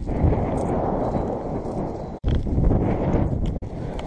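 Loud, dense rumble of wind and handling on the camera's own microphone as the camera is moved about at a fence. It drops out twice, very briefly, about two and three and a half seconds in.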